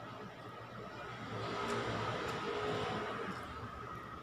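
A passing road vehicle: a rushing noise that swells about a second in and fades again near the end.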